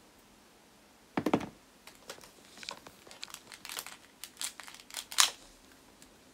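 Close handling noise: a rustle about a second in, then a run of short clicks and rustles, the loudest just before the end.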